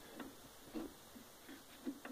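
A few faint, short clicks and knocks of steel on steel as the movable jaw of a homemade shaper bed clamp is slid along its chrome-plated guide rods.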